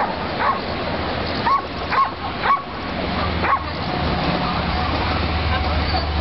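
A dog barking: about six short, high-pitched barks at uneven intervals over the first three and a half seconds, then it stops.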